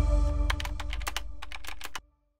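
Logo sting sound design: a held synth chord fading out under a quick run of about a dozen sharp clicks as the lettering builds, then cutting off suddenly.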